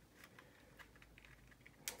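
Near silence with a few faint, light clicks, the loudest near the end: a resin nose piece and a plastic model fuselage knocking lightly together as they are handled and held together for a test fit.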